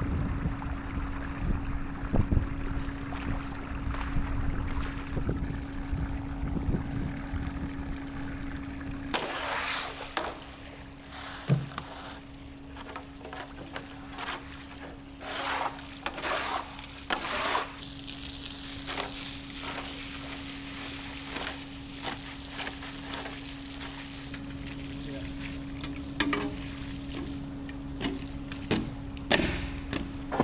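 Water rushing out of a just-unplugged underground drain pipe into a muddy ditch. About nine seconds in, a long-handled scraper is pushed over wet concrete in repeated strokes, clearing bedding and water sludge. A garden hose flushes the drain line with a steady hiss of spraying water, and a faint steady hum runs underneath.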